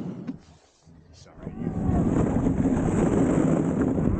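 Dog sled running over a snowy trail: a steady rumble and hiss of the runners on snow, with wind on the microphone. The sound drops away almost to nothing about half a second in and comes back about two seconds in.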